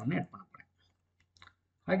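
A few faint, short clicks of a computer mouse button between stretches of a man's speech.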